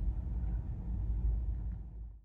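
Low, steady rumble inside the cabin of a Tesla Model 3 rolling forward at walking pace, fading away near the end.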